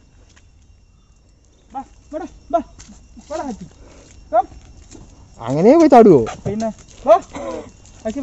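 A young American Staffordshire Terrier whines in several short, high-pitched bursts. About five seconds in, a person's voice calls out once, long and rising then falling, followed by a few shorter calls.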